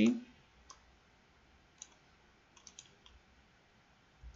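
A few faint, sharp computer clicks: one about a second in, another near two seconds, then a quick run of three and one more near the end.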